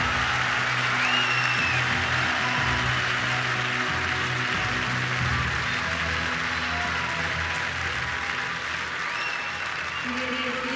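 Music playing over a stadium crowd's steady applause and cheering, with a whistle about a second in and another near the end.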